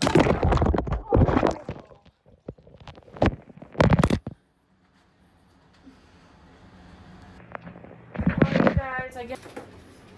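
A phone dropping into bath water, recording as it goes: loud splashing and knocks in the first second and a half and twice more around three and four seconds in. Then a muffled, quiet stretch while it lies in the water, and more splashing near the end as it is fished out.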